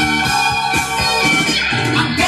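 Music from a vinyl record playing on a Dual 1241 turntable with an Empire 66 cartridge, heard through loudspeakers, running steadily and loud.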